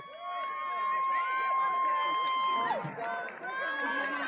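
A spectator's single long, high-pitched cheering yell, held steady for about two and a half seconds and then falling off, over the murmur of a track-side crowd.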